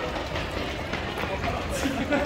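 Footfalls and a rumbling, jostling noise on a handheld camera's microphone while the person holding it runs along a city street.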